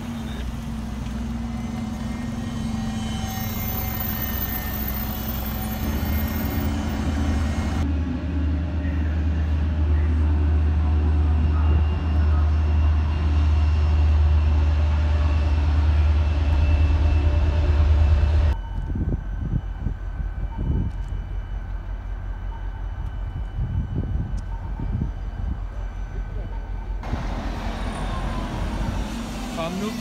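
Iveco city buses' engines running as they idle and drive past, with a deep, steady rumble that is loudest in the middle. The sound changes abruptly several times where separate clips are joined.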